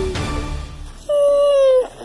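A single high-pitched, drawn-out cry of under a second that dips in pitch at the end, a monster screech for the Mothra toy.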